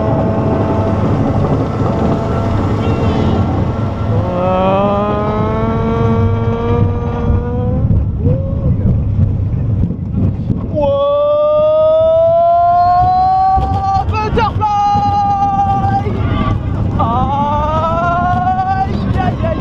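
Vekoma looping roller coaster train climbing the lift hill and cresting, heard from the front seat: a steady rumble with wind noise. Three long whines slowly rise in pitch, the loudest about eleven seconds in.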